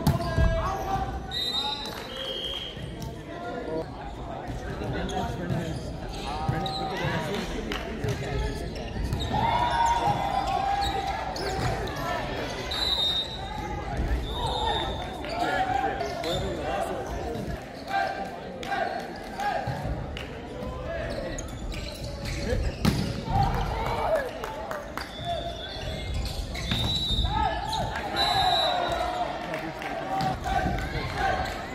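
Indoor volleyball being played in a large, echoing sports hall: players shouting short calls, the ball being struck and thudding, and short high squeaks, typical of shoes on the court floor, scattered throughout.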